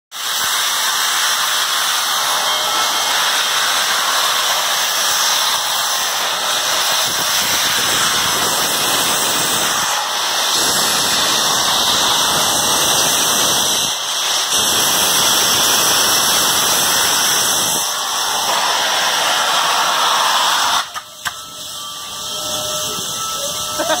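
Union Pacific 4014 Big Boy steam locomotive blowing steam out around its cylinders: a loud, steady hiss with a few brief dips, cutting off suddenly about 21 seconds in and leaving a quieter background.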